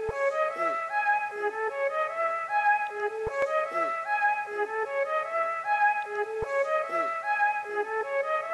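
Instrumental background music: a melodic phrase of held notes that repeats about every three seconds, with a faint tick at the start of each repeat.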